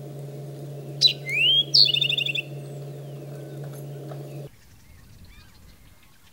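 Male eastern towhee singing one short song about a second in: a sharp high note and a rising slurred note, then a quick trill of about eight notes, the familiar 'drink-your-tea' pattern. A steady low hum underneath stops abruptly about four and a half seconds in.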